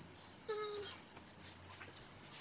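A single short squeak, falling slightly in pitch, about half a second in.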